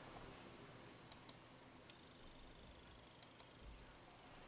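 Near silence broken by two faint double clicks of a computer mouse, one about a second in and one about three seconds in.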